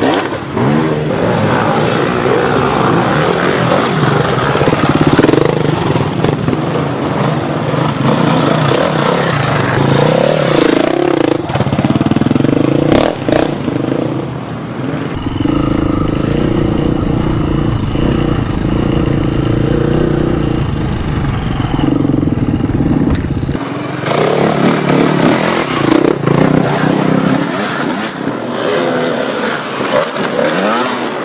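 Enduro motorcycle engines revving up and down as the bikes ride a forest trail. Around the middle, for about eight seconds, the engine is heard from on the bike itself, steadier and duller.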